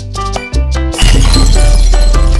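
Intro music with pitched notes over deep bass, and about a second in a loud glass-shattering sound effect that crashes in over it and keeps going.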